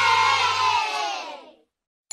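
Cheering sound effect of a crowd of children over a steady low music note. The note stops under a second in, and the cheering fades out about a second and a half in, leaving silence.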